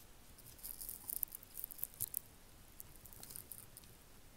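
Faint, scattered clicks and light metallic rattling as an adjustable case-back opener wrench is handled and fitted onto a watch's steel screw-down case back, the watch held in a case holder.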